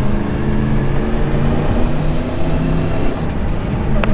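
Motorcycle engine running steadily at moderate revs while riding along at town speed, its note shifting a little with the throttle, under wind and road noise.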